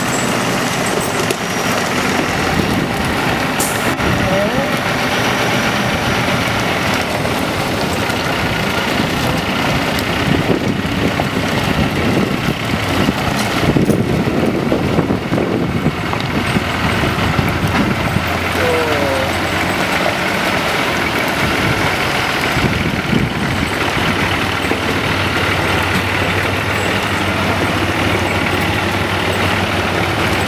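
Semi-truck diesel engine running steadily under load while slowly pulling a heavy trailer, with a couple of brief faint squeaks.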